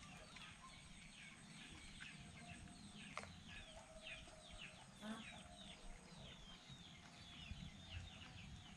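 Faint bird chirping: a steady run of short, high, falling chirps, a few every second.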